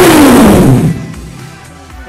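A sudden loud crash with a falling boom under it, dying away over about a second.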